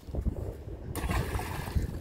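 A thrown stone splashing into a muddy river about a second in, over low wind rumble on the microphone.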